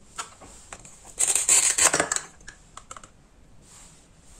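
Velcro strip tearing apart as the two halves of a plastic toy kiwi are pulled open, one rip about a second long, with a few light plastic clicks before and after.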